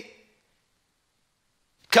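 A man's speech trailing off, then about a second and a half of dead silence before his voice starts again near the end.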